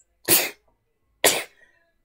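A person coughing twice, about a second apart.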